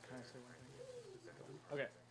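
Faint low bird call: one rising-and-falling note, about half a second long, in the middle of a pause between speakers.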